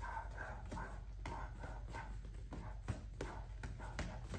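Boxing gloves smacking into a partner's held-up gloves in a fast six-punch combination (jab, cross, uppercut, jab, cross, hook), several sharp knocks over about three seconds, with puffs of breath between them.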